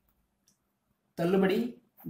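A faint single click, then a voice speaking briefly in Tamil about a second in.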